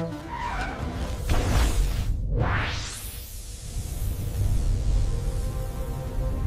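Cartoon sound effects over background music: a whoosh about a second in, then a sharp rising sweep near the middle, with a steady low rumble underneath.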